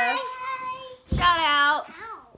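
A young child singing out a drawn-out, sing-song "bye" in two long held notes. The first trails off just after the start, and the second, louder one comes about a second in.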